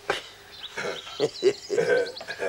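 A man laughing in short, repeated bursts, starting under a second in.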